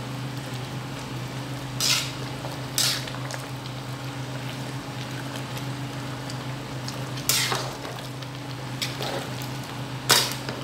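Pot of plantain and potato porridge simmering and bubbling on the stove over a steady low hum, with a slotted spoon scraping against the metal pot three times: about two seconds in, near three seconds, and about seven seconds in.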